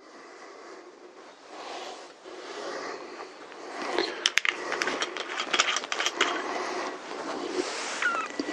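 Handling noises: a run of light, sharp clicks and small knocks starting about four seconds in, over a low hiss.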